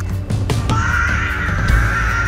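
A labouring woman crying out in one long, high, strained yell while pushing, starting just under a second in, over background music.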